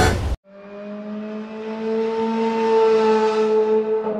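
A car engine sound effect: a steady droning engine tone that fades in after a sudden cut to silence, grows louder and rises slightly in pitch.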